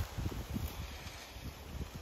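Low wind rumble on the microphone, fading off over the two seconds.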